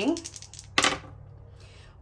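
Two small dice shaken in the hand and rolled onto a paper sheet on a tabletop: a few light clicks, then a short clatter as they land about three-quarters of a second in.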